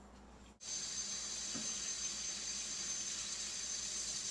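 Tap water running from a kitchen faucet into a stainless steel kettle: a steady hiss with a high metallic ringing, starting suddenly about half a second in.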